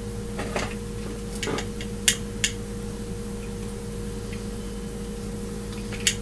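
Several light clicks and taps from hands fitting a plastic headlamp and its battery pack onto the elastic head strap, the sharpest about two seconds in, over a steady low electrical hum.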